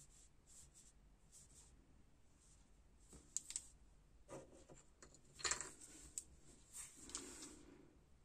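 Very faint scratching and rubbing from a gel brush and long artificial nails being handled at close range, with a few slightly louder brief scrapes in the second half.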